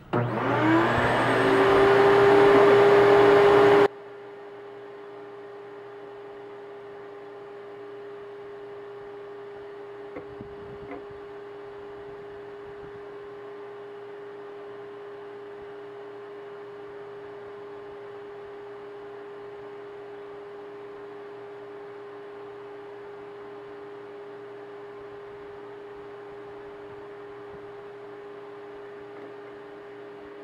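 Vacuum cleaner motor starting with a rising whine and running loud for about four seconds, then dropping suddenly to a much quieter steady hum that stops right at the end. The vacuum is drawing suction on a cracked PVC fitting to pull primer into the crack.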